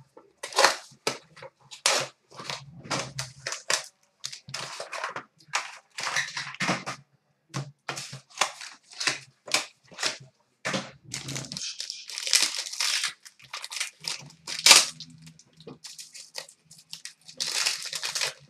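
Plastic wrap and a card pack's wrapper crinkling and tearing as a hockey card box and its pack are opened by hand. There are many short crackles, with a longer stretch of tearing about two-thirds of the way in.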